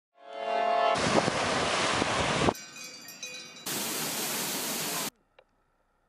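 Synthetic intro sound: a short held chord, then loud rushing noise, a quieter patch with scattered tones, and a second stretch of rushing noise that cuts off suddenly about five seconds in.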